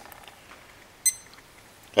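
A single short, high electronic beep about a second in, from a digital timer being started.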